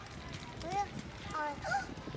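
Short snatches of speech, with a few faint clicks.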